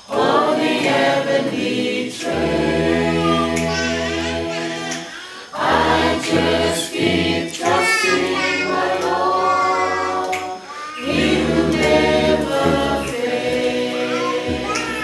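A choir of mixed voices singing in harmony, without words clear enough to make out, in long held phrases with short breaks for breath about two, five and a half and eleven seconds in.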